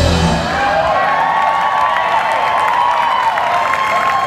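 A live jazz band's tune ending: the bass and drums stop just after the start, leaving held and wavering high tones while the audience cheers and applauds.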